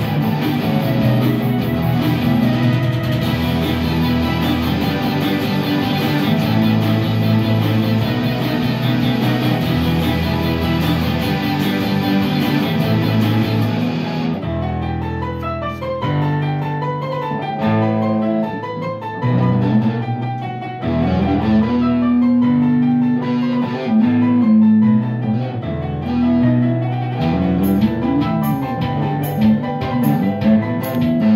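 Electric guitar played over a sequenced backing track. The sound is full and dense for about the first half, then thins out about halfway through to sparser notes, some of them sliding in pitch.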